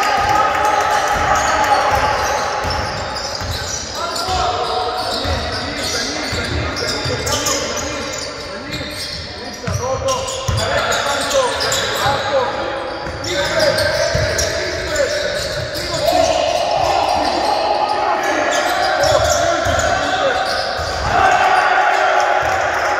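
A basketball being bounced repeatedly on an indoor court during a game, with voices over it.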